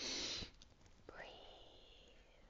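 A woman's short breathy whisper, lasting about half a second at the start, followed by a faint thin high tone.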